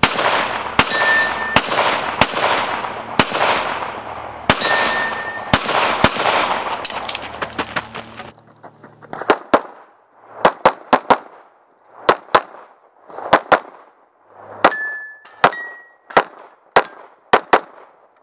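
Competition pistol fired rapidly, shot after shot, often in quick pairs, each crack echoing off the range berms for the first eight seconds, then sounding shorter and drier. A few shots are followed by a short metallic ring, typical of steel targets being hit.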